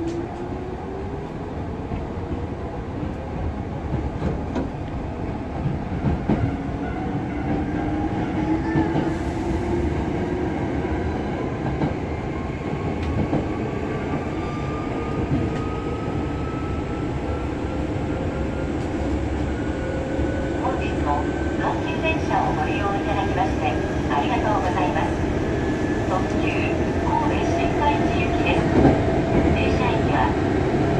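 Hankyu 7000 series electric train's traction motors and gears running under IGBT field-chopper control. Their hum rises steadily in pitch as the train accelerates, climbing quickly at first and then levelling off, over a constant rumble of running gear.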